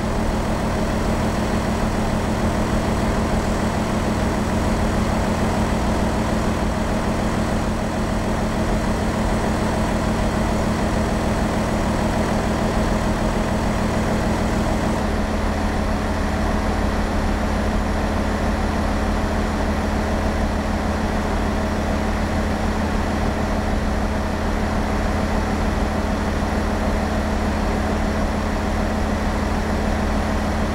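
BMW X7 xDrive40d's 3.0-litre straight-six diesel idling steadily. Its sound changes character abruptly about halfway through.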